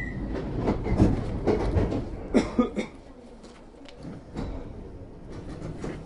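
London Underground train carriage rattling and knocking, with a run of irregular clatters and the loudest bang about two and a half seconds in, then quieter rumbling with a few scattered knocks.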